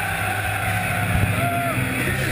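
Punk rock band playing live, captured by a camera in the crowd as a distorted, rumbling mix dominated by bass guitar and drums. A short high tone rises and falls about a second and a half in.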